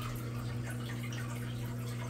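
Steady low hum from running aquarium equipment, with faint water trickling and dripping from the tanks' filters.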